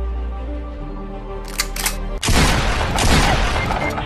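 Background music holding a sustained chord, then two short clicks and two loud gunshot sound-effect blasts about a second apart in the second half.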